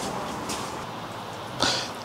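Rustling and shuffling of a person walking off, clothing brushing a clip-on lapel microphone, with a brief louder rustle near the end.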